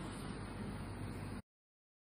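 Steady background hiss with a low electrical-sounding hum, with no distinct event, cutting off abruptly to dead silence about one and a half seconds in.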